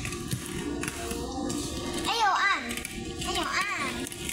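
Young children's high voices calling out in rising-and-falling, sing-song tones about two seconds in and again near the end, over background chatter, with light clatter of plastic pit balls being handled.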